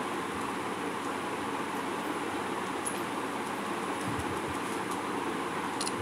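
Steady background noise, an even hiss-like hum with no speech, with a few faint low bumps near the end.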